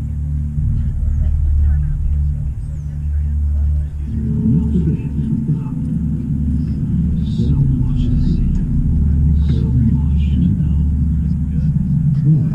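Indistinct voices of people talking nearby over a steady low rumble, likely wind on the microphone. No drumming.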